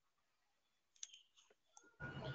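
Near silence, with one short faint click about a second in and a couple of fainter ticks near the end.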